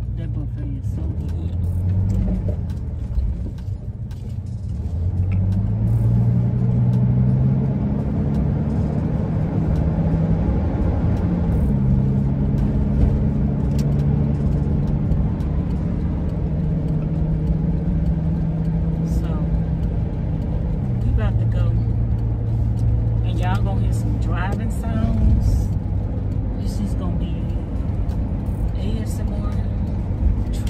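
A 2001 Ford E-350 camper van's engine and road rumble heard from inside the cab while driving. The engine's pitch climbs and then steps down several times as the van speeds up and changes gear.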